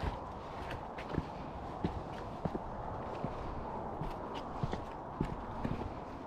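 Footsteps on bare rock at an easy walking pace, a short knock with each step.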